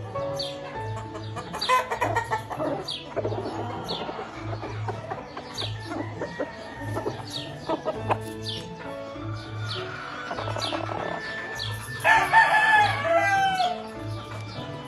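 Gamefowl roosters crowing and clucking over background music with a steady beat. The loudest crow comes near the end: one long call that falls in pitch at its close.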